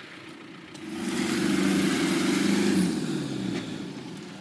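Land Rover Discovery's turbo-diesel engine revving hard for about two seconds as the stuck truck tries to drive out of deep mud, then easing off.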